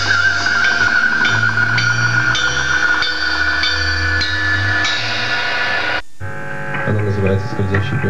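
Live rock band playing: a held, wavering high note rings over low bass notes and evenly spaced cymbal strikes. The sound cuts off abruptly about six seconds in, and the band comes back in.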